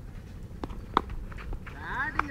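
A sharp knock about halfway through, then a drawn-out livestock call, like cattle lowing, starting near the end.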